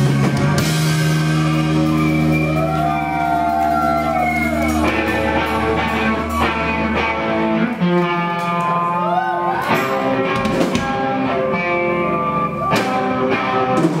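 Live rock band playing loud: electric guitars and a drum kit, with long held chords and a sliding, wavering pitch a few seconds in.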